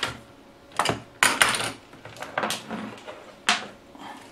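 A handful of sharp plastic and metal clicks and clatters as the amplifier's rear panel and fuse holder are handled on a workbench, the loudest a little over a second in.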